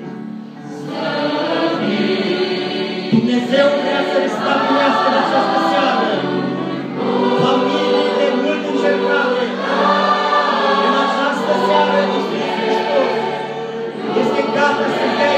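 Large mixed choir of young men and women singing a gospel song together; the singing dips briefly at the start and comes back in about a second in.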